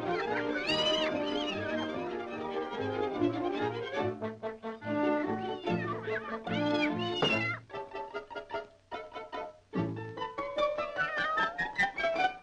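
1930s orchestral cartoon score, with two high, gliding, meow-like cries about a second in and again about seven seconds in. In between the music breaks into short, choppy staccato notes with brief gaps, then swells into a sustained, rising, trilling phrase near the end.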